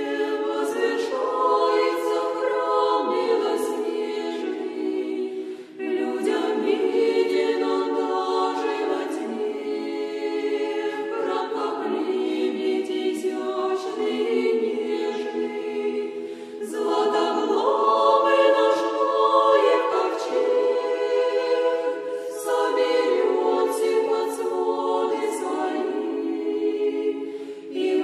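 A women's convent choir sings an Orthodox spiritual song unaccompanied, in long sustained phrases with brief pauses for breath between them.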